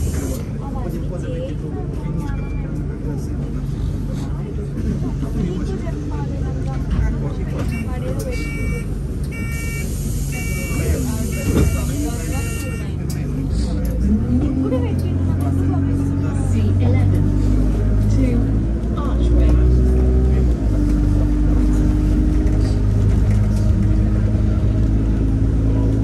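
Interior of a single-deck diesel bus (Alexander Dennis Enviro200) idling at a stop. Partway through, a run of short beeps with an air hiss sounds as the doors close. About fourteen seconds in, the engine note rises as the bus pulls away, and it keeps running under load.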